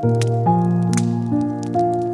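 Slow, gentle solo piano music, with new notes struck about twice a second. Fireplace crackling runs underneath as scattered sharp pops and snaps.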